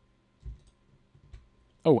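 Mostly quiet desk room tone with a soft low thump about a quarter of the way in and a couple of faint computer-mouse clicks. A man's voice starts near the end.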